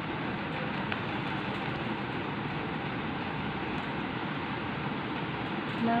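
Steady background rushing noise, even and unchanging, with no speech over it.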